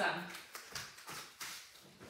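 A few faint, soft knocks about a second in, spread over roughly a second: footsteps and a person settling onto a Pilates reformer's carriage.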